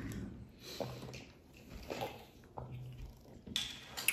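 Faint sounds of a person drinking water from a glass: a few soft, short sounds about a second apart over a quiet room.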